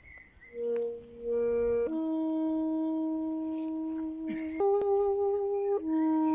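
Saxophone playing a slow solo melody of long held notes, beginning about half a second in with a couple of short notes, then holding one note, stepping up to a higher note and dropping back near the end.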